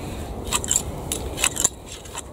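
Long-handled lawn edging shears snipping grass along the lawn edge: a quick series of about six sharp blade snips.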